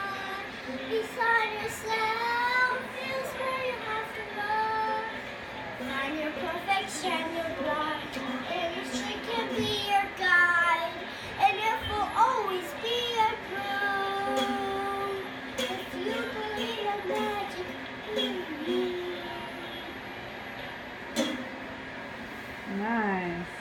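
A young girl singing a song, her voice gliding up and down with some long held notes.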